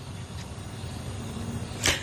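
Outdoor ambient noise on a live microphone: a steady low rumble that slowly swells, with a quick sharp intake of breath near the end.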